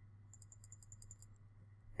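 A quick, even run of about ten faint computer-mouse clicks, close to ten a second, lasting about a second, as a stop order is moved down in trading software.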